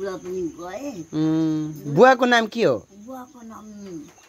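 An elderly woman's voice wailing without words: a long held note about a second in, then a loud cry that rises and falls away. A steady high insect trill runs underneath.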